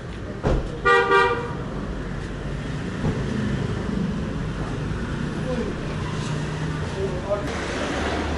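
A vehicle horn gives one short toot about a second in, just after a single thump, over steady street traffic noise.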